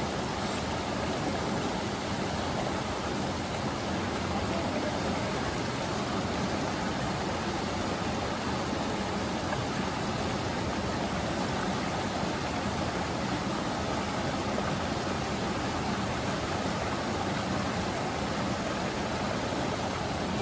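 Creek water rushing steadily over rocks and a small cascade.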